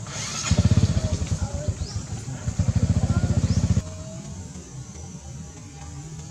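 A small motorcycle engine running close by, with a rapid, even low pulsing that comes in about half a second in, eases briefly around two seconds, and cuts off suddenly near four seconds.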